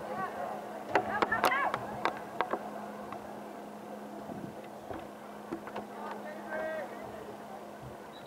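Scattered distant shouts from players and spectators at a soccer match, with a few sharp knocks and a low steady hum that fades out about a second and a half in.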